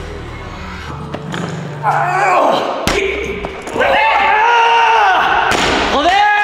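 A loaded barbell with bumper plates dropped onto the gym floor, one heavy thud about three seconds in, after a heavy cluster attempt. A long, loud voice follows, the loudest sound here.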